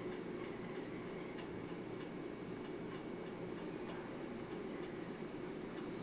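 Quiet room tone: a steady low hum with a few faint, sparse ticks or clicks.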